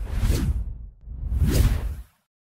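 Two whoosh sound effects, one after the other, each swelling and fading over about a second with a deep rumble underneath.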